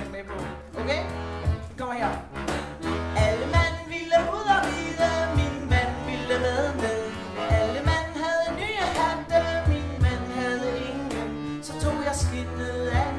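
Live acoustic folk band playing an upbeat tune: accordion and a woodwind carry the melody over a steady cajón beat.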